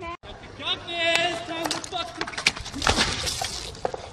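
People's voices shouting and exclaiming, without clear words, mixed with several sharp knocks and a noisy crash about three seconds in.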